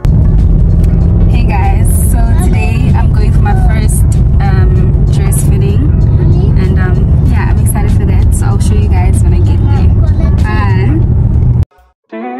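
A woman talking inside a moving car over a loud, steady low rumble of road and engine noise. The sound cuts off suddenly near the end.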